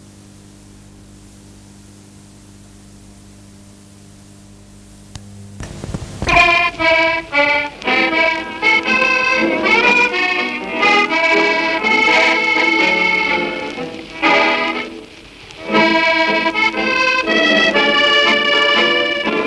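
A steady low hum, then about five and a half seconds in accordion music starts: a melody of held and quick notes, with a brief dip about fifteen seconds in.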